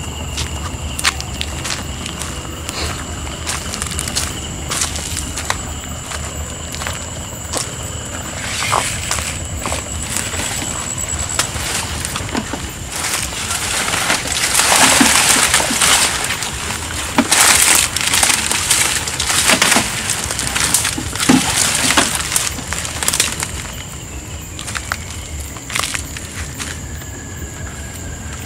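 Leaves of dense water hyacinth rustling and crackling as a person pushes and reaches through them, loudest in bursts around the middle. A steady, high-pitched drone of night insects runs underneath.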